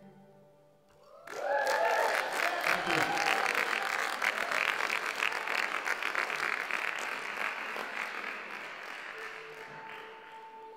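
Audience applause breaks out about a second in, with a whooping cheer at the start, and the clapping slowly fades. Near the end a violin starts a held note.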